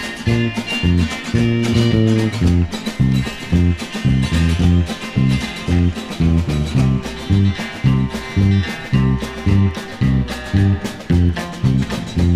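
Electric bass guitar playing a bouncing line along with a country backing track at 111 bpm, the low notes landing about twice a second and alternating between two pitches. A guitar plays over it and there are no vocals.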